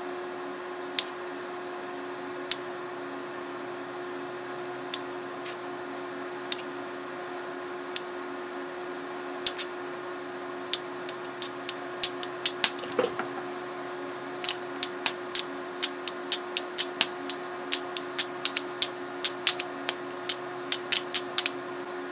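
Metal alligator clips on a DC boost converter's output tapped together again and again, shorting the output to test its short-circuit protection. They make sharp clicks, only a few at first and then several a second over the last third. A steady hum runs underneath.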